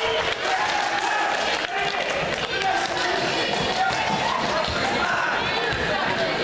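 Gym sound of a basketball game: overlapping voices of players and spectators calling and talking, with a basketball bouncing on the hardwood court.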